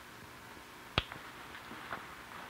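Dressmaking shears snipping into the blouse fabric: one sharp click about a second in and a fainter one near the end, over the steady hiss of an old film soundtrack.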